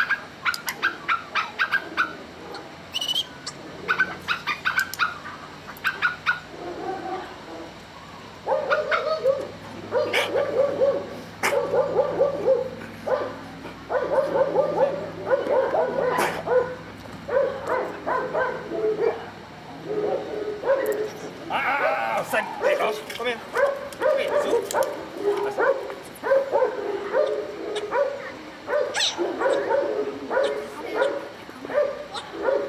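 Dog whining and yipping in quick, repeated short calls, sped up so they sound high and hurried, with a run of sharp clicks in the first few seconds.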